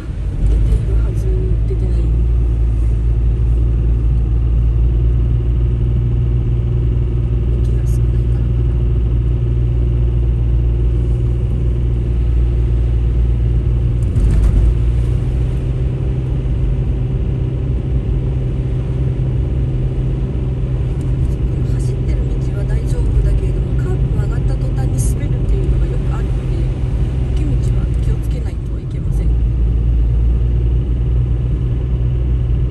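Car cabin noise while driving on a wet, slushy road: a steady low drone of engine and tyres.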